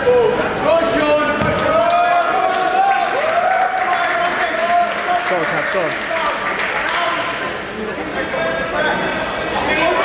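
Spectators shouting and calling out in an echoing sports hall, one voice holding a long drawn-out call for several seconds, with a few thumps in the background.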